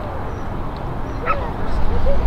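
A dog yipping: one high, rising yip about halfway through, then short barks near the end, over a steady low background rumble.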